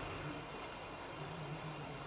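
Quiet, steady background hiss with a faint low hum that comes in about halfway through.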